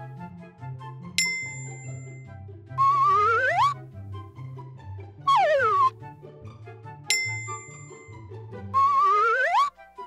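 Looping cartoon background music with a bass line, over which a sliding whistle tone swoops down, a bell dings, and a sliding whistle tone swoops up; the whole pattern plays twice, about six seconds apart.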